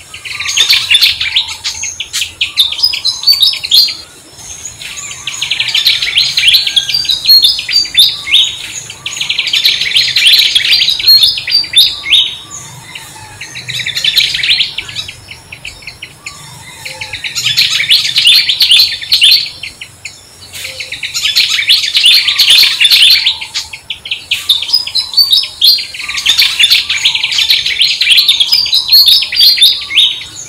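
Birds chirping in repeated bouts of rapid, high twittering. Each bout lasts two to three seconds, with a short lull between, coming about every four seconds.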